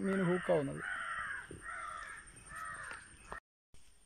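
A bird calling over and over, a string of short calls one after another, with a man's voice briefly in the first second.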